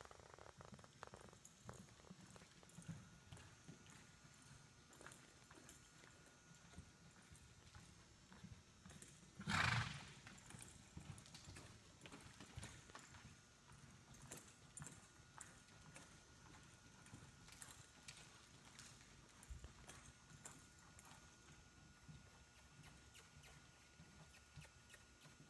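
Faint, irregular hoofbeats of a horse loping on soft arena dirt. About ten seconds in comes one short, loud snort from the horse.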